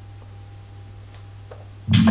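A low steady hum with a couple of faint clicks. Near the end, house-style electronic dance music starts suddenly from the DJ software, with a strong regular beat.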